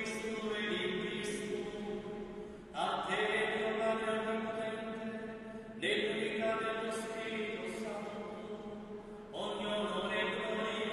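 A priest's voice chanting a Mass prayer on long held tones, in phrases that start about every three seconds and fade away, with a long church echo.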